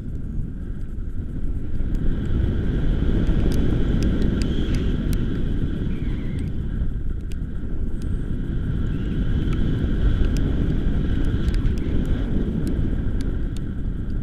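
Airflow buffeting an action camera's microphone during a tandem paraglider flight: a loud, steady, low rumbling rush with an uneven flutter.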